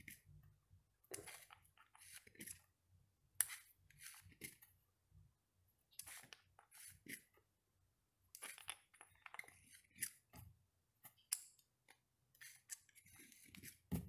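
Faint, scattered clicks and scrapes of a steel digital caliper's sliding jaw being moved and closed on a small 3D-printed plastic test cube, with soft handling rustles from the fingers.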